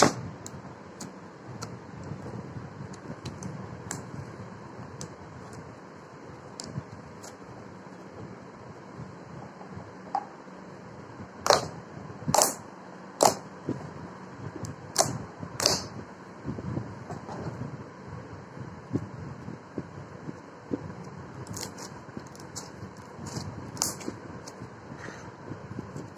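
Homemade glossy slime being poked and kneaded by hand, giving small sharp clicks and pops, with a run of about six louder pops in the middle.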